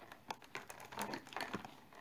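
Fingertips and nails picking and scratching at the perforated cardboard door of an advent calendar, a string of faint scattered clicks and crinkles as the door is worked loose.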